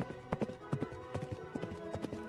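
Horses galloping, their hooves striking in a quick, uneven patter, over background music.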